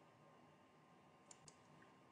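Near silence: room tone, with two faint clicks in quick succession a little over a second in.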